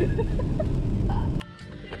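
Steady road and rain noise inside a car cabin while driving on a wet highway in rain, cutting off suddenly about a second and a half in to a much quieter interior.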